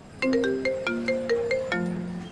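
Mobile phone ringing with a melodic ringtone: a quick, repeating run of bell-like notes that starts a moment in.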